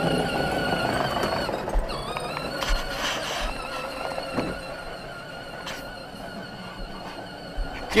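Battery-powered John Deere ride-on toy tractor driving, its electric motor and gearbox giving a steady whine of several high tones that fades about halfway through as the tractor moves away. A few dull low bumps are mixed in.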